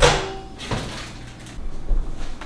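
Microwave door clunking on its latch, a sharp knock that rings off briefly, followed by a lighter knock and a few clicks as the food is handled.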